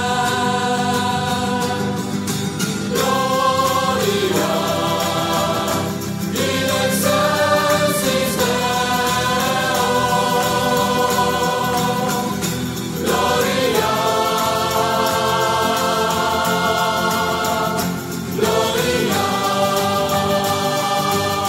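Sacred choral music: a choir singing long held chords in phrases several seconds long, with brief breaks where the chord changes.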